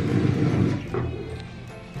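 Newborn baby crying, loudest in the first second with a shorter rising cry about a second in, over background music.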